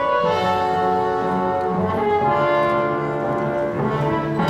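Orchestral music with brass, horn-like, playing slow held chords that change every second or so over low bass notes.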